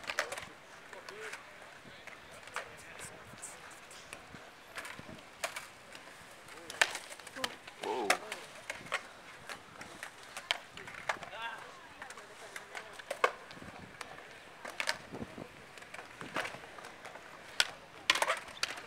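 Skateboards on a concrete skatepark: sharp, irregular clacks as boards hit and land on the concrete.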